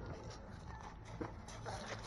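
Quiet outdoor background with a low, steady rumble and a few faint crunches, as of feet shifting on shingle.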